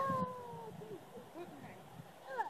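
The tail of a child's long, high-pitched squeal, sliding down in pitch and fading out within the first second. A few faint, short high calls follow.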